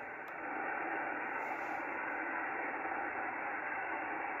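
Steady band-noise hiss from a Yaesu FTdx10 HF transceiver's speaker on 10-metre SSB, between transmissions, cut off above the SSB passband. The receiver is in IPO (Intercept Point Optimization) with the preamp off, which lowers the noise. The hiss grows a little louder about half a second in.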